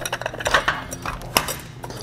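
Stainless steel pump stages of a Goulds submersible pump end clinking and scraping as they are slid off the pump shaft, a floating-stage design whose parts are not fixed to the shaft. A few sharp metal clinks, the loudest about two-thirds of the way in.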